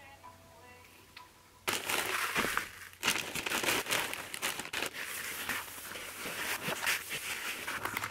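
Wood-shaving bedding rustling and crunching as it is tipped from a plastic bag into a plastic cage tray and spread by hand. The rustling starts suddenly about two seconds in and goes on unevenly after that.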